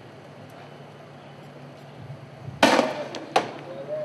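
Two sharp bangs about three-quarters of a second apart, the first louder and ringing on briefly, over a low steady background rumble.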